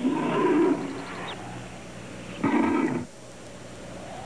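Grizzly bear roaring twice: a loud burst lasting about a second, then a shorter one about two and a half seconds in.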